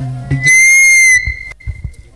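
A sudden, very loud, shrill steady squeal, like PA microphone feedback, lasting under a second and distorting; it drops to a faint tone at the same pitch and then dies away.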